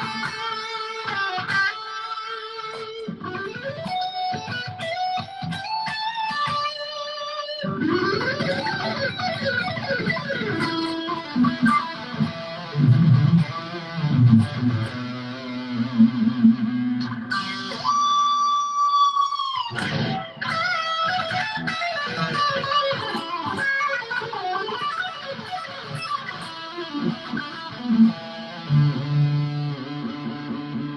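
Distorted electric guitar playing a lead line through a high-gain Dual Rectifier amp simulation with stereo delay and reverb. Single-note runs with bends, a long held note about two-thirds of the way in that bends down and stops, then lower notes near the end.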